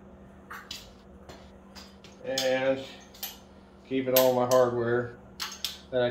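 Loose steel bolts clinking against a small round metal parts tray, several sharp separate clicks and rattles, between a few spoken words.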